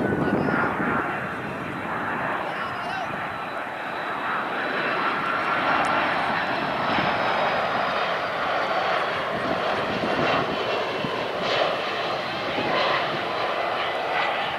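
Airbus A330-200 jet airliner on final approach passing low overhead: steady engine roar with a high whine that slides slowly down in pitch.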